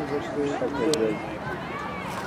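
Indistinct voices of people talking in the background at an outdoor track, with a single sharp click about a second in.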